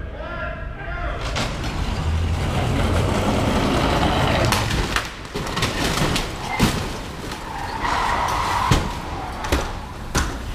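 Staged stunt crash of SUVs: engine and tyre noise builds over the first seconds. Then comes a run of loud, sudden metal-and-stone impacts as the cars slam into a stone pillar and into one another, the heaviest about six and a half and about eight and a half seconds in.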